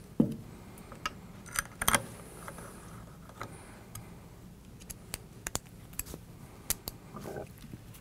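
Light metallic clicks and clinks of small screws and a T-handle Allen wrench being handled on a bench, with a dull knock about a quarter second in and a short cluster of clicks near two seconds.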